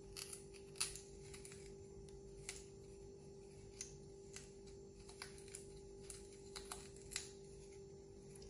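Small kitchen knife cutting and scraping into the end of a raw carrot to begin hollowing it out: faint, crisp clicks and scrapes at irregular intervals, about ten in all, over a steady low hum.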